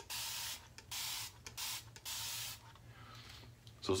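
Single-edge safety razor with a Feather ProSuper blade scraping through lathered stubble in several short strokes, each a scratchy rasp, stopping about two and a half seconds in.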